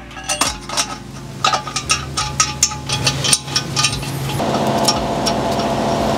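Steel head studs clinking and clicking against the torque plate and each other as they are dropped into the block and spun in by hand, many light metallic clicks. About four seconds in, a steady mechanical hum starts under them.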